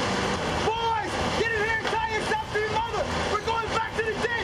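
A man yelling wordlessly in a string of short, high-pitched cries that arch up and down, over a steady rushing noise.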